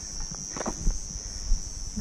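A steady, high-pitched chorus of insects, with a few faint scuffs about halfway through and a low rumble beneath.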